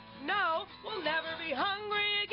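A woman singing the drawn-out closing notes of a short song, her voice swooping up and down, with acoustic guitar.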